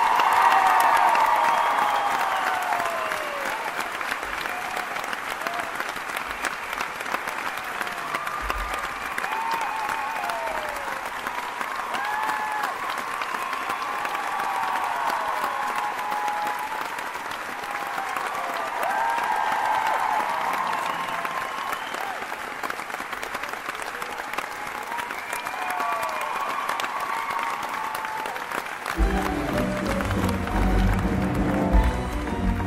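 Theatre audience applauding and cheering, with scattered high whoops that fall in pitch, after the musical's closing number. Music starts up again near the end.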